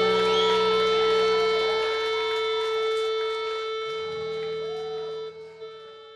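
A live rock band's final chord ringing out through guitar amplifiers, a steady held tone on top and the low note shifting once, slowly fading and dying away near the end.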